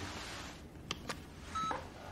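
Two faint clicks from the buttons of a handheld digital voice recorder about a second in, then a short electronic beep.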